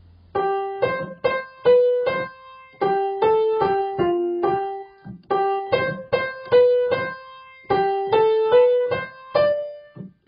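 Piano playing a choral anthem's accompaniment in short, repeated chords with a brisk, steady rhythm, coming in just after the start.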